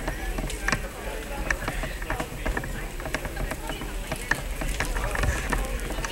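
Indistinct chatter of people in a hall, no words clear, over a steady low hum, with many scattered sharp clicks and knocks.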